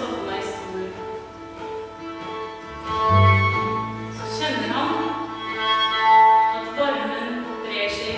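A small Norwegian folk ensemble playing live: fiddle melody over strummed acoustic guitar, with a double bass holding low notes.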